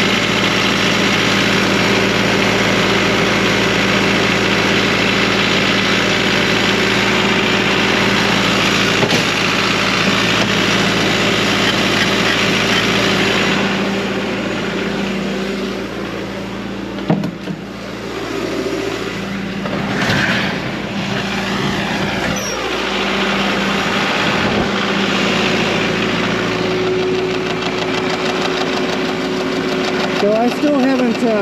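Diesel engine of a New Holland compact track loader idling steadily. It grows fainter for several seconds in the middle, with a single sharp knock, then comes back up to the same steady idle.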